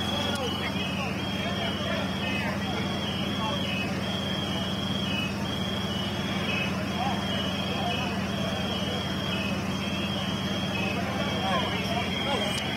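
Steady low hum of idling vehicle engines, with a high electronic tone beeping on and off at irregular intervals and indistinct voices of the responders.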